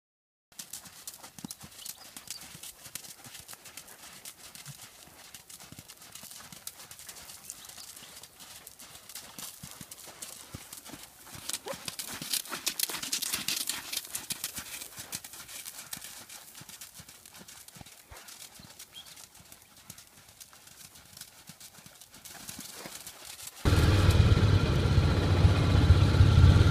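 Hoofbeats of a ridden Friesian horse: a run of uneven clops, loudest in the middle. Near the end the sound cuts suddenly to a much louder low rumble.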